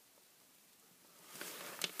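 Near silence for over a second, then a faint soft hiss near the end, with a small tick just before the end.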